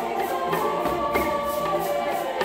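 A choir singing sustained chords in harmony, with djembes and other hand drums beating beneath.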